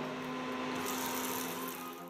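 Hot oil sizzling steadily as crumb-coated potato balls deep-fry in a pan, under soft background music with a few held notes.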